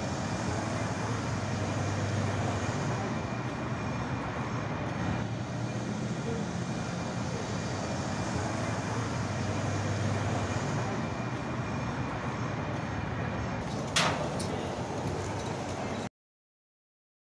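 City street traffic noise: a steady low engine rumble of vehicles, with one sharp knock about 14 seconds in.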